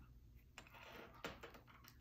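Faint handling sounds: a few soft clicks and a light rustle as an elastic cord is threaded through the holes of a leather bag strap.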